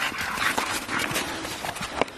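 A Staffordshire bull terrier playing in snow: a quick, irregular run of crunching and scuffing noises.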